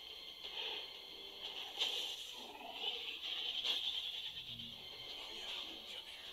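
Faint movie audio playing back, with a steady hiss and a few weak scattered sounds.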